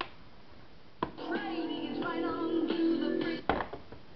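GE clock radio telephone's radio muting and unmuting as the handset is worked: a click, about a second of quiet, another click, then music from the radio's small speaker for about two and a half seconds, cut off by a couple of knocks near the end.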